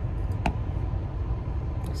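Car air conditioning running steadily inside the car cabin, with the low rumble of the idling car beneath it and a faint steady hum. A single click sounds about half a second in.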